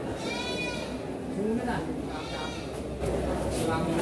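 Goats bleating: two high, wavering calls, one near the start and one about two seconds in.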